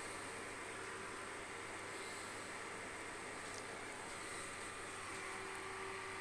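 Large enamel pot of soup at a rolling boil on an electric hob, giving a steady, even hiss.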